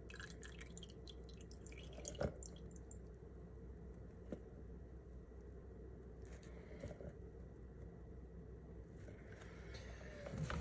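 Faint dripping and trickling of melted beef tallow as it is poured from an air-fryer basket through a paper towel into a glass jar, with a couple of small knocks about two and four seconds in.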